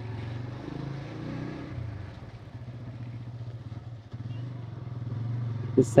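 Motorcycle engine running steadily while riding at speed, with a brief rise in engine note about a second in.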